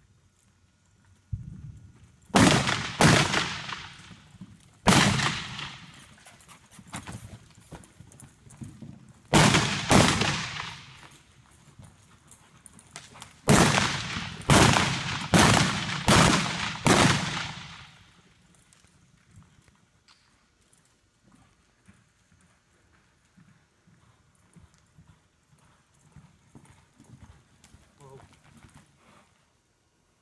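Single-action revolvers firing blanks from a galloping horse, about ten sharp shots in quick runs, each ringing in an indoor arena. Hoofbeats on dirt sound under the shots, and only soft hoofbeats remain once the shooting stops about two-thirds of the way in.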